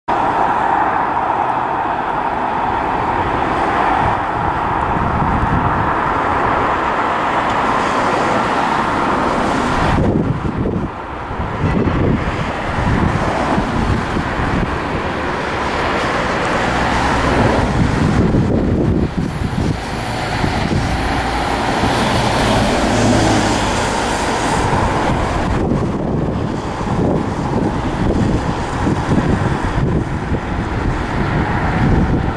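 A Class 66 diesel freight locomotive with its two-stroke V12 engine draws slowly closer at the head of a freight train. It is heard against steady road-traffic noise and gusts of wind buffeting the microphone.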